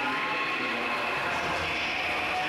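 Steady crowd noise of many young voices cheering and shouting, echoing in an indoor pool hall during a swim race.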